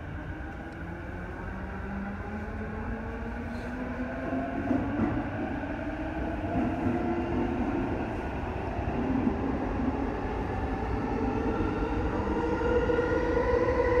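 E233-7000 series electric train accelerating through a tunnel: the traction motor whine rises steadily in pitch over the wheel and running rumble, and the whole grows louder as speed builds.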